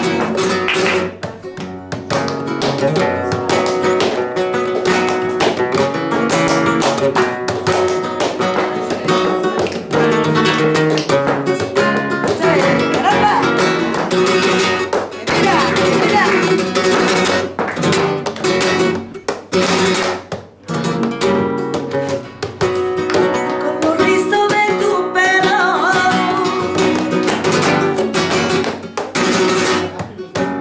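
Flamenco guitar playing strummed chords and runs, accompanied by palmas (rhythmic flamenco hand-clapping). A voice sings in places.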